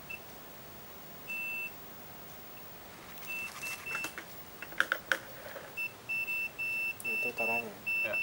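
Digital multimeter's continuity beeper sounding as the test probes are held to the antenna's wiring. It gives a single steady high tone in pulses, one longer beep and then short ones, becoming a quick broken run near the end as the probes make and lose contact. Each beep signals a closed electrical connection between the probed points. A few sharp clicks come about five seconds in.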